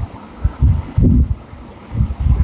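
Two low, muffled thumps on a clip-on microphone, about half a second in and again about a second in, over a faint low rumble.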